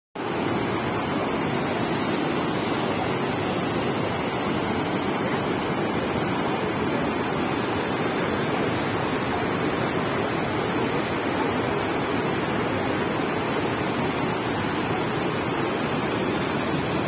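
Floodwater from an overflowing lake tank rushing in white-water rapids over rocks and through brush: a loud, steady rush of water.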